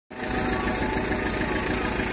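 Engine of a Maxxi four-wheel-drive compact tractor running steadily at low revs.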